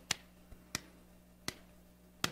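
Four sharp, faint hand claps at uneven spacing, a slow mock round of applause.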